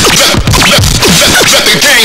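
Turntable scratching in a hip hop music track: a rapid run of short back-and-forth record scratches sweeping up and down in pitch.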